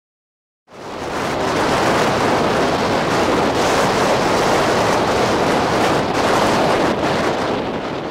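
Strong wind blowing over the microphone: a loud, steady rushing noise that starts abruptly just under a second in.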